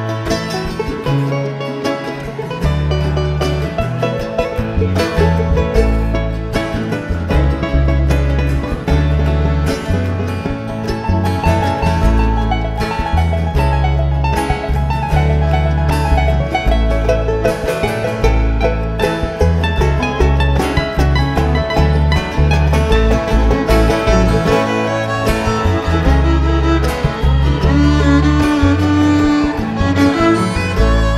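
Live bluegrass string band playing an instrumental break: rapid picked banjo and guitar over a walking upright bass line. A fiddle comes in with a sliding, held note near the end.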